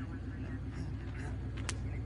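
Steady low drone of an idling vehicle engine, with a brief faint tick near the end.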